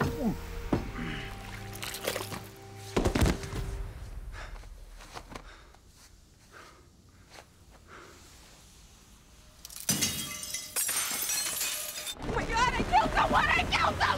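Film soundtrack of a fight: dramatic music with sharp hits in the first few seconds, then a quiet stretch broken by a loud shattering crash about ten seconds in. Music and voices follow near the end.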